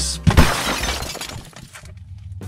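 Breaking-glass sound effect: a sudden crash about a third of a second in, then a shattering noise that fades away over about a second, over a faint music bed that drops out briefly near the end.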